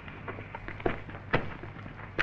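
Crackly hiss of an old film soundtrack over a steady low hum, with a few faint sharp clicks about a second in.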